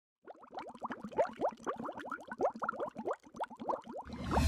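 Underwater bubbling sound effect: a rapid stream of bubbles, each a short rising blip.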